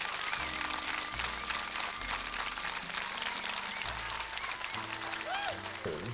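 Crowd applauding, with music playing under it in held low notes.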